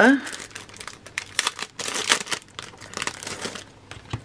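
Clear plastic packaging sleeve crinkling in irregular crackles as a bendy ruler with sticky notes is pulled out of it.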